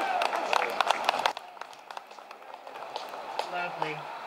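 Applause from a small crowd, heard as separate hand claps, right after a song ends; it stops abruptly about a second in. A faint low voice comes in near the end.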